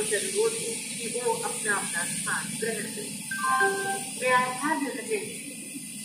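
Railway station public-address announcement through platform loudspeakers, the voice tinny and narrow. Under it runs the low steady rumble of passenger coaches rolling past.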